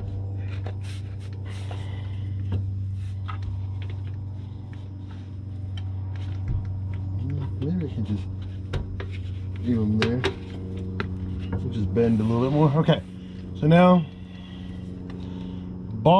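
Light clicks and rubs of a steel sway bar being handled and pressed up against a car's rear axle beam, over a steady low hum. Short voice sounds from the worker come several times in the second half, the loudest near the end.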